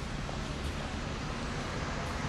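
Steady outdoor background noise: an even low rumble and hiss with no distinct events.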